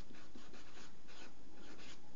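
Sharpie felt-tip marker writing a word on paper: a run of short, faint strokes of the tip.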